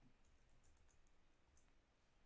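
Near silence, with a few faint, short clicks.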